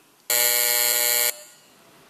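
Electronic buzzer sounding once, one steady tone for about a second that cuts off sharply: the plenary signal that a vote has been opened.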